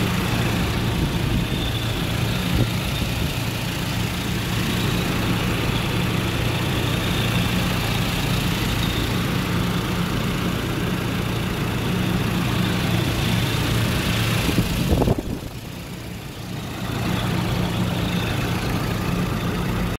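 2012 Toyota Fortuner engine idling steadily with the bonnet open, dipping briefly in level about three quarters of the way through.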